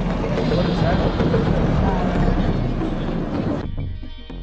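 Indistinct voices over steady, low-pitched drag-strip background noise, which cuts off sharply near the end.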